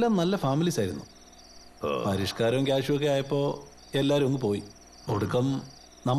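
Crickets chirping in a steady, high-pitched trill behind a man talking in short phrases.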